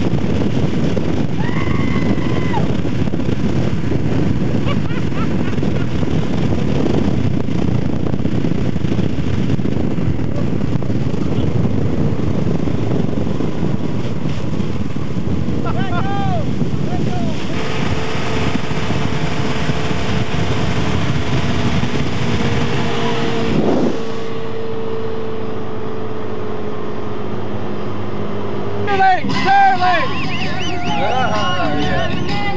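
Boat engine running at towing speed under a loud rush of wind and water spray; from a little past halfway a steady engine drone sinks slightly in pitch. A few brief shouts, with voices again at the very end.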